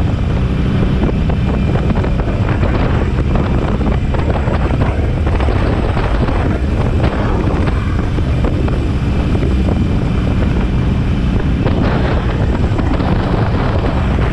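Harley-Davidson Iron 883's air-cooled V-twin engine running steadily while riding, under heavy wind buffeting on the microphone.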